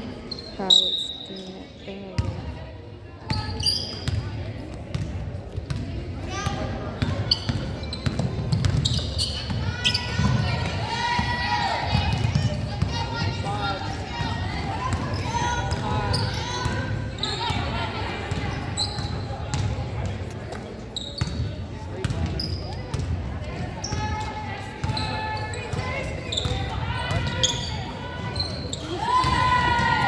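Basketball being dribbled and bouncing on a hardwood gym floor, with sneakers squeaking and players and spectators calling out. Everything echoes in the large gym.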